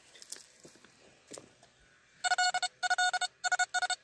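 XP ORX metal detector giving a string of about four short, steady, same-pitched beeps as the coil passes over the freshly dug spot, starting about two seconds in after some faint scraping of soil. The repeated target tone shows the buried object is already out of the hole, in the loose spoil.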